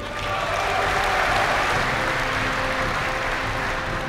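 A large audience applauding, building up over the first second and then holding steady, over faint background music.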